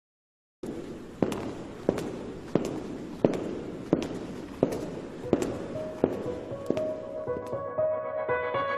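A song's intro: a steady beat of sharp hits, about three every two seconds, over a noisy wash. About six seconds in, held tones come in and grow louder, building toward the start of the song.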